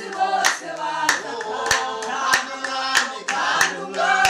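A group of men and women singing a worship song together in unison, clapping their hands in a steady beat of roughly one clap every two-thirds of a second.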